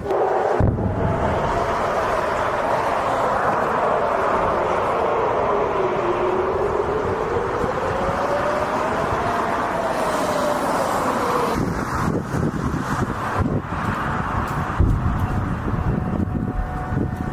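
Air-raid warning siren wailing, its pitch falling slowly, rising again, then falling and fading out about three-quarters of the way through, over a steady rushing background noise. It is the alert for incoming missiles.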